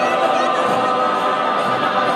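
Background music: a choir singing, with many voices holding sustained notes.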